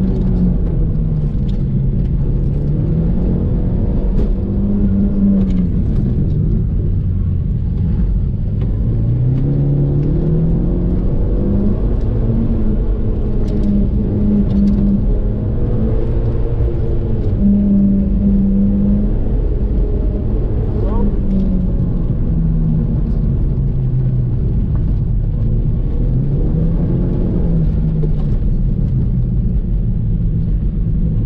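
2002 Audi TT's turbocharged 1.8-litre four-cylinder, heard from inside the cabin through a non-resonated Milltek cat-back exhaust, rising and falling in pitch over and over as the car accelerates hard and slows for the cones, with short stretches held at high revs.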